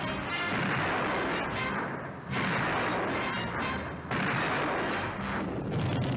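Film soundtrack explosions: loud, dense blasts, with two sudden new blasts about two and four seconds in, over background music.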